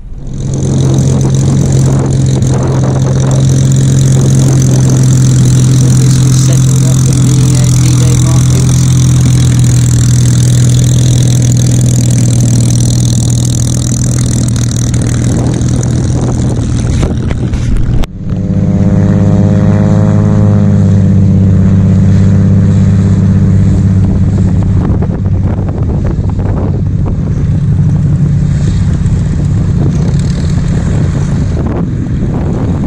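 Vintage piston-engined fighter aircraft engines running loudly at close range, a steady deep note. It cuts off abruptly about 18 seconds in and another engine sound takes over, its pitch briefly rising and then falling a couple of seconds later.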